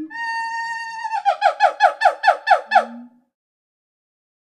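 A gibbon hooting: one long steady note, then a quick run of about nine short falling notes at roughly five a second, with a brief low note near the end.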